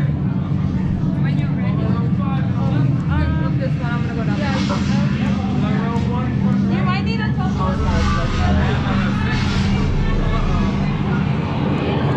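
Indistinct chatter from a crowd of guests moving through a doorway, over a steady low hum.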